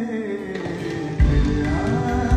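Live band music with melodic electric guitar and keyboard lines; heavy low beats come in just over a second in and the music gets louder.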